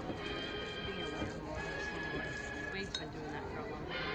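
Soundtrack of an old black-and-white horror-movie trailer playing over the theatre's speakers: dramatic music with held notes and a voice. Dishes and cutlery clink, with one sharp clink about three seconds in.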